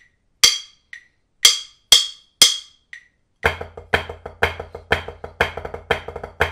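Drumsticks striking a rubber practice pad: a few separate count-off strokes with faint ticks once a second, then about three and a half seconds in a fast, steady run of flam-rudiment strokes in a triplet feel with regular louder accents begins.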